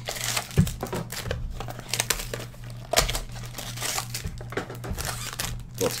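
Foil wrappers of Topps Museum trading-card packs crinkling in the hands as they are handled and opened, a run of irregular sharp crackles.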